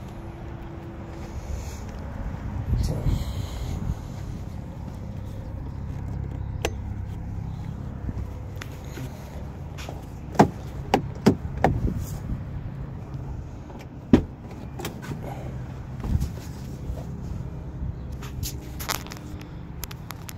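A car door being unlatched and swung open, with several sharp clicks and knocks from the latch and handle over a steady low rumble.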